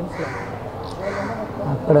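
A brief pause in a man's speech, filled with faint background voices and a short, harsh noisy sound near the start.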